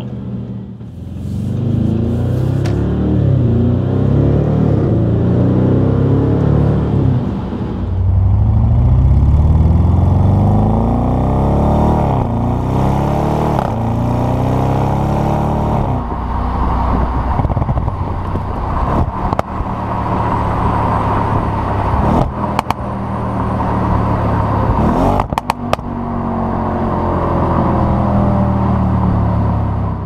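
The 2015 Audi RS 7's twin-turbocharged V8 exhaust, heard close to the tailpipes, pulling hard under acceleration. The pitch climbs and drops back at each quick upshift of the 8-speed automatic, then the engine settles into a steadier drone with a few sharp cracks.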